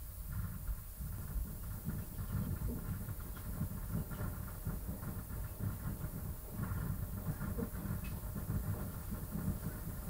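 Low, uneven rumbling background noise with a faint hiss, with no distinct event standing out.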